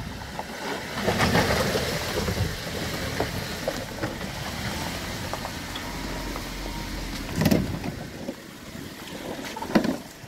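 Jeep Wrangler JK's V6 engine running at low revs as it crawls down a wet, rocky trail, with tyres grinding over stones. Two louder sharp knocks come about seven and a half seconds in and just before the end.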